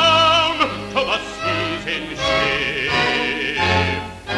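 A baritone singer holds the last note of a sung line with vibrato; it ends about half a second in. An orchestral accompaniment carries on without words.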